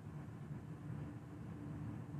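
Faint steady room noise with a low hum during a pause in speech; no distinct sound event.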